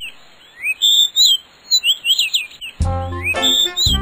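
Birds chirping in quick, high, rising and falling calls, a birdsong soundtrack effect; about three quarters of the way through, a background music track starts under the chirps.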